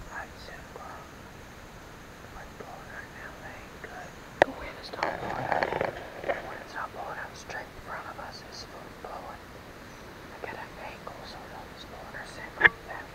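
A man whispering in short, broken phrases, with one sharp click a little over four seconds in.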